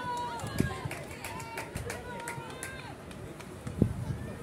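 Voices calling and shouting across an outdoor football pitch, with two short low thumps, one about half a second in and a louder one just before the end.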